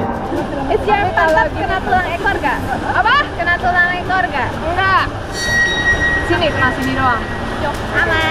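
Voices talking and exclaiming over the steady rush of a shallow rocky stream.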